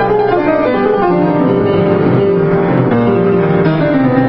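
Kawai KG2 5'10" baby grand piano, recently restrung, being played: a continuous flowing passage of many overlapping notes over held low bass notes.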